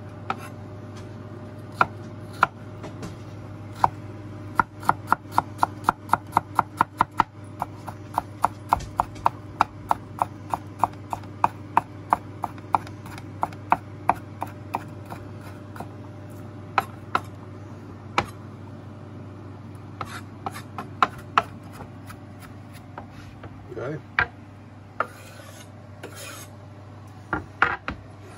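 Chef's knife chopping garlic on a wooden cutting board: sharp taps of the blade on the wood, a quick even run of about five strokes a second a few seconds in, then slower, scattered chops. A steady low hum sits underneath.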